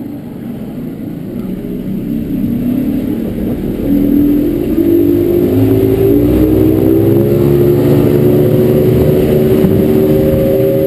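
Evinrude 135 H.O. E-TEC two-stroke outboard accelerating, its pitch rising and getting louder over the first few seconds, then holding a steady, high note as the boat runs at speed.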